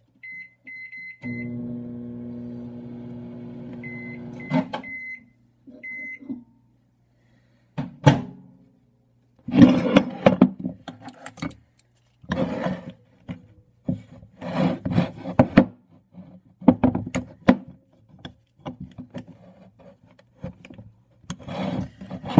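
Microwave oven keypad beeps, then the oven runs with a steady hum for a few seconds as it melts soft-plastic, and beeps again as it stops. From about eight seconds in, repeated clanks and knocks of a metal Do-It worm mold being handled and clamped shut.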